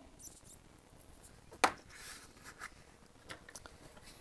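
Faint scratching and scraping as a craft knife trims the edge of a foam board circle, with one sharp click about one and a half seconds in.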